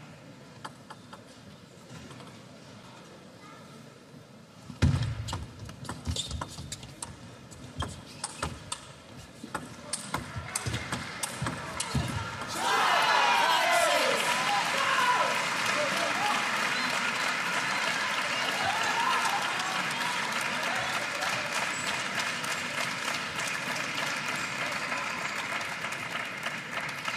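Table tennis ball struck back and forth in a rally, a quick series of sharp clicks of ball on bats and table starting about five seconds in. About halfway through, a crowd breaks into loud cheering and shouting that carries on to the end.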